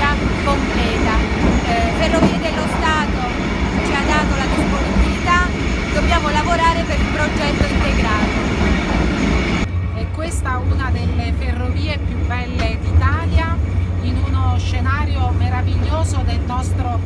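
Indistinct chatter of many passengers inside a moving train carriage, over the train's running noise. About ten seconds in, the sound cuts abruptly to a steady low rumble, with voices still heard over it.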